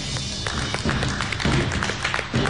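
Background music with a quick, tapping percussive beat.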